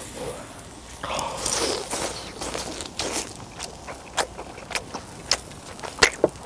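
A man chewing a mouthful of charred, burnt-black Jeju black pork close to the microphone: a string of irregular chewing clicks and crunches.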